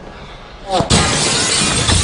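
Glass shattering: a sudden loud crash of breaking glass about a second in, the breaking continuing, just after a brief falling tone.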